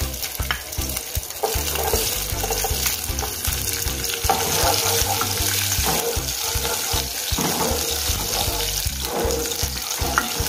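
Chopped onions sizzling steadily in hot oil in a nonstick pot over high heat, stirred with a spatula.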